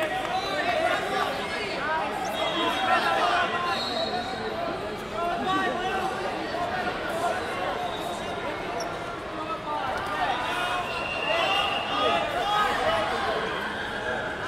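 Indistinct shouting and calling from coaches and spectators, many voices overlapping and echoing in a large hall, with occasional thumps from the mat.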